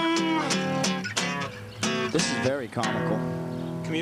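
A man singing to a strummed acoustic guitar: his held note ends about half a second in, and the guitar strums on for a few more beats.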